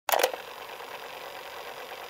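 Tape deck sound effect: a sharp clack as the play key goes down at the very start, then steady tape hiss with a faint mechanical whir as the reels run.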